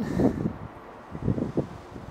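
Light wind on the microphone, with a couple of soft, dull footfalls as one trainer-shod foot steps down from an aerobic step platform onto a rubber gym floor.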